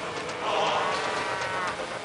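A cow mooing: one long, slightly arching call lasting over a second, over a steady rushing background noise.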